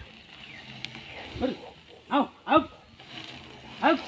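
A man's voice calling four short, sharp commands to a working elephant, each a single shouted syllable.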